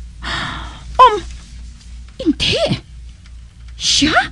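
A person's breathy gasps and short high-pitched vocal cries: a loud, sharp cry falling in pitch about a second in, then gasps with a rising pitch near the middle and at the end.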